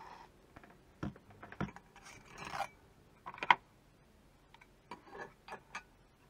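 Handling noises: a few light knocks and a rubbing scrape, then a sharp clack about halfway through, followed by small clicks. These come from a toothed circular saw blade being lifted out of a wooden drawer and laid on the machine's wooden top.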